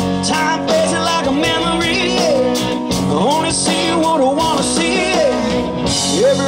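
Live country-rock band playing an instrumental passage: electric guitars, bass and drums, with a lead line of sliding, bent notes over a steady beat.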